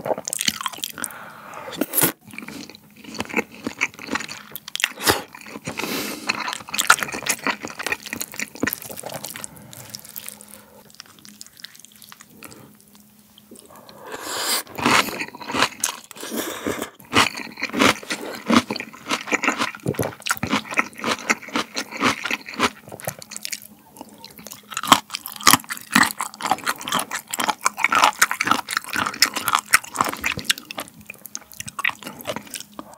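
Close-miked eating sounds: chewing salmon sushi, then slurping and chewing cold, spicy raw-fish soup (mulhoe), with crunchy bites of abalone. A quieter lull comes a little before halfway.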